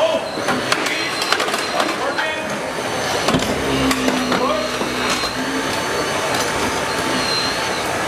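Battery-powered hydraulic rescue tool working a car's front fender to open up the door hinge. The tool's motor runs, steadier in the second half, under repeated sharp cracks and creaks of bending sheet metal.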